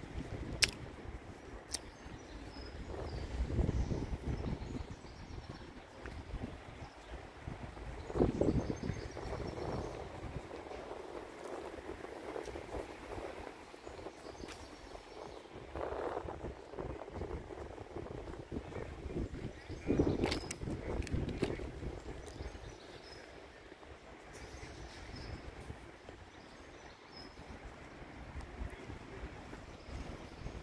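Outdoor town ambience while walking: wind gusting on the microphone in a few swells, with faint bird chirps and a low background of distant traffic.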